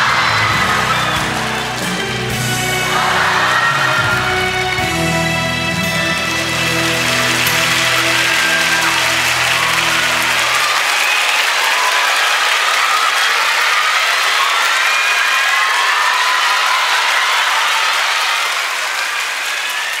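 Audience applauding over a rock band's closing guitar chords. The held chords stop about halfway through, and the applause carries on alone.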